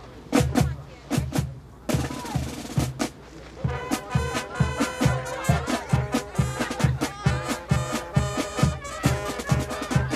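Marching band playing a march. Drum beats come in alone at first, then brass and woodwinds join in about four seconds in over a steady beat of about two drum strokes a second.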